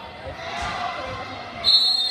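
Gym crowd chatter with a basketball bouncing on the hardwood court, then a referee's whistle blows sharply near the end, a loud piercing blast that is the loudest sound here.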